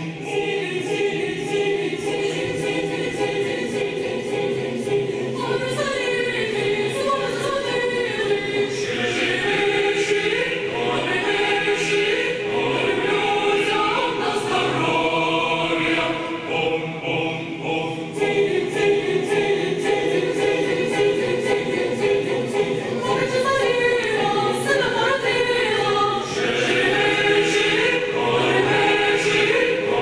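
Mixed choir of young female and male voices singing a Christmas carol (koliadka) unaccompanied, in full sustained harmony.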